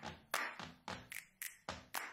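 A run of light, sharp taps, about three to four a second, each dying away quickly.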